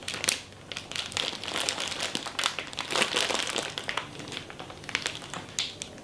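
Plastic bag of lettuce crinkling and crackling as it is pressed and squeezed to push the air out before it is sealed.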